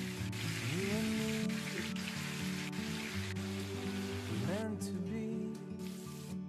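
Spice-coated fish pieces sizzling in hot oil in a frying pan, a dense crackling hiss that drops away about four and a half seconds in, under background music.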